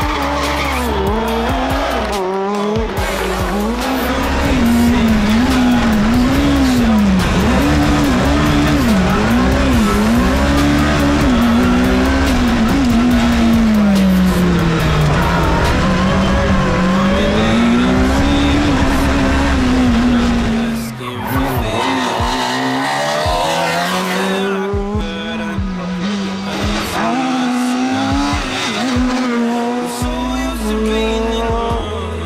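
Fiat Punto Super 1600 rally car's 1.6-litre four-cylinder engine revving hard, its pitch climbing and dropping again and again through gear changes and corners. Background music plays underneath.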